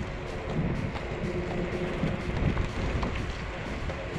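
Dual-motor electric scooter in motion: steady wind noise buffeting the microphone over a low rumble from the ride.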